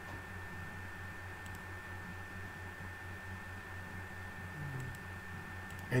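Room tone of a desktop recording setup: a steady low hum and hiss with a thin high whine, and a couple of faint clicks.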